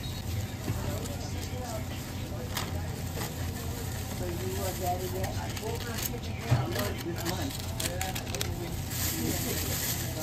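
Deli room sound: faint background voices over a steady low hum, with scattered sharp crinkles of the sandwich's paper and foil wrapping being handled and one brief louder knock about six and a half seconds in.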